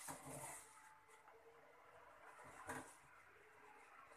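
Near silence: room tone, with a couple of faint brief sounds.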